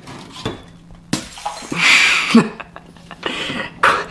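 A crash and clatter of things falling and breaking on a tiled kitchen floor: a sharp knock about a second in, a louder crash around two seconds in, and a last sharp click near the end.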